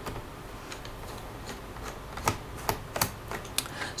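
Light, irregular clicks of a screwdriver working loose the captive screw on a laptop's plastic hard-drive cover, with the sharpest clicks in the second half.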